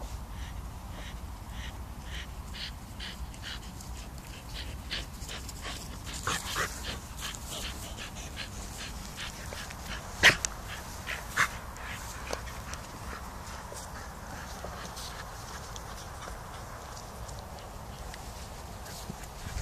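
A dog giving a few short, sharp vocal sounds, the loudest about ten seconds in and another a second later, over a run of soft regular ticks about twice a second.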